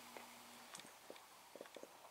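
Near silence: room tone, with a few faint short clicks in the second half.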